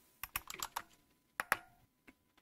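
Computer keyboard keystrokes: a quick run of light key clicks in the first second, then two sharper clicks about a second and a half in, as keys are pressed to switch windows with Alt+Tab.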